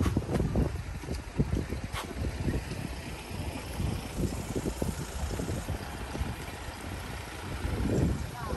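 Wind buffeting a phone's microphone outdoors, an uneven low rumble that rises and falls in gusts, with a couple of faint clicks early on.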